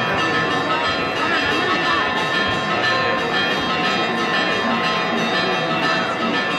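Church bells ringing in a dense, continuous peal of overlapping tones, with crowd voices underneath.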